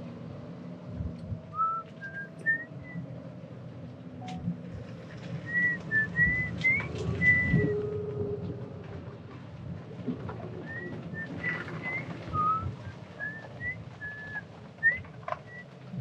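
Clear whistled notes in short, stepping melodic phrases, with one note held longer near the middle, over the low rumble of a golf cart driving along a paved path.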